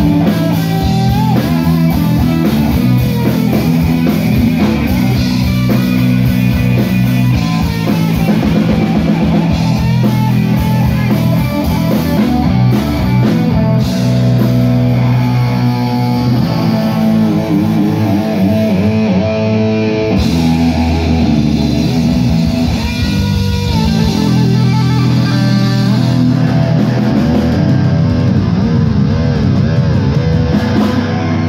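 A live hard rock band playing loud, with electric guitar and a drum kit.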